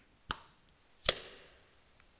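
Two finger snaps, sharp clicks a little under a second apart, the second louder with a short decay after it.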